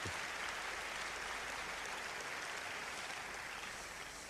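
Large audience applauding, a steady wash of clapping that slowly dies away near the end.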